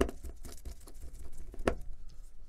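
Small plastic clicks and taps from a smartphone's parts being handled and fitted together during reassembly. A sharp click opens, light ticking follows, and a second sharp click comes near the end.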